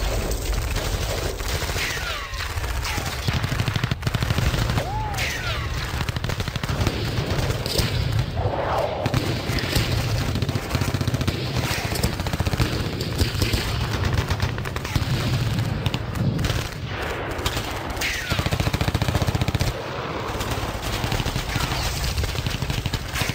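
Noisecore played by a guitar, drums and vocal trio: a continuous, dense wall of distorted guitar noise over rapid-fire drumming, with a few falling squeals.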